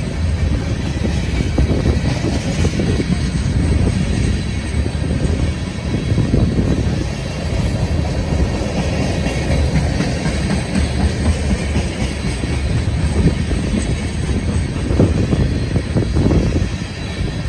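Norfolk Southern freight train of tank cars rolling past: a steady, loud low rumble of steel wheels on rail.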